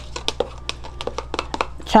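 Nitrile-gloved hands handling a plastic beaker: a run of small, irregular clicks and taps over a low, steady hum.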